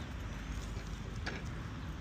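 Steady low rumble of wind and riding noise on a head-worn camera's microphone while cycling, with one faint click a little past halfway.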